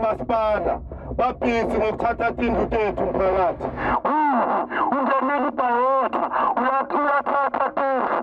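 A man calling out in a local language into a microphone, amplified through a vehicle-mounted loudhailer, with a radio-like quality. A low rumble runs under the voice and stops abruptly about four seconds in.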